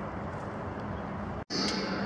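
Steady outdoor background noise, an even hiss with no distinct events, broken off abruptly by an edit about a second and a half in. After the edit comes the steady background of a large indoor hall.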